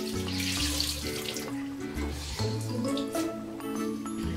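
Water running from a tap into a bathroom sink as a face cloth is soaked in hot water. Background music with steady low notes plays over it.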